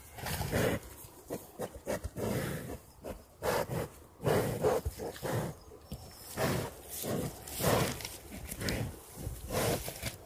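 A bull giving a run of short, low roaring grunts, about a dozen in ten seconds, as it paws the ground and digs its head into the earth.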